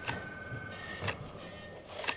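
Retro computer interface sounds: two sharp clicks about a second apart over a steady high electronic tone, which stops partway through and gives way to a slightly higher tone.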